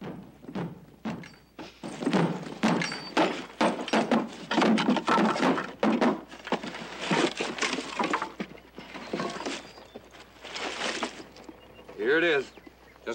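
Thumps and clatter of gear being handled and dropped into a wooden buckboard wagon bed: a run of irregular knocks, heaviest in the middle few seconds.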